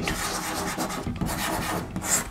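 Chalk scratching on a blackboard as music notes are drawn: a steady rough scraping.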